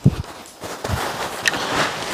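Rustling of bamboo leaves and undergrowth as a tall bamboo culm is handled, with a couple of low thumps at the start.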